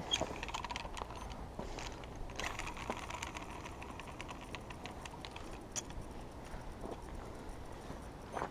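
Quiet outdoor background with faint scattered small clicks, most of them bunched together a little before the middle.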